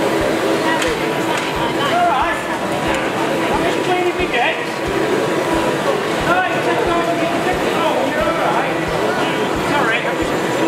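Steady hum of a running wood lathe and its dust extractor, under indistinct chatter from many people in a large hall.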